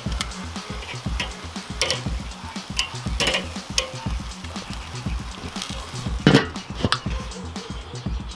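Chicken wings sizzling on a charcoal kettle grill, with metal tongs clicking against the grate as they are turned, over background music with a steady beat. About six seconds in comes a louder clank as the kettle's lid goes on.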